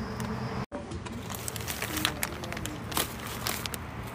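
Outdoor background noise with a steady low hum and scattered light clicks and taps. The sound cuts out completely for a moment just under a second in.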